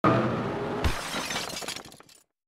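Glass-shattering sound effect on a title card: a loud crash with a ringing tone at the start, a second hit just under a second in, then the breaking glass dies away over about a second.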